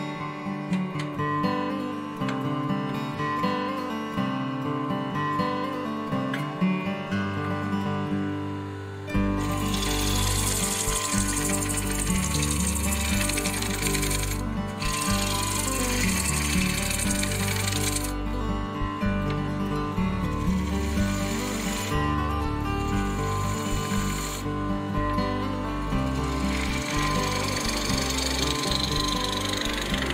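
Acoustic guitar music throughout. From about nine seconds in, the hiss and rumble of a turning tool cutting a spinning wooden bowl on a wood lathe joins it, dropping out briefly a few times.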